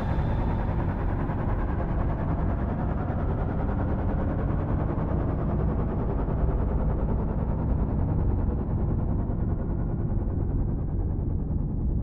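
A low, rumbling synthesizer drone from a prog rock track. It grows steadily duller as its high end fades away over the whole stretch.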